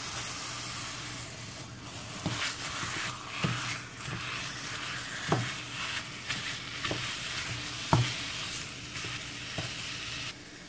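Ground beef sizzling in a hot skillet while a plastic meat chopper breaks it up, scraping through the meat, with a sharp knock against the pan every second or two.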